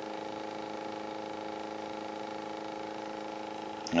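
Homemade Bedini-style pulse motor, with one trigger coil and two run coils, running and giving off a steady, even-pitched buzz from its pulsed coils.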